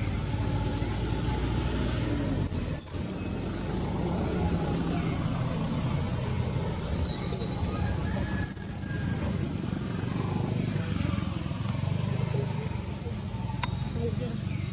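A steady low rumble of motor traffic, with a couple of brief high squeaks partway through.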